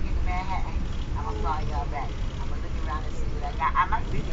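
Steady low rumble of an Amtrak train running, heard from inside the passenger car, with people talking in the background.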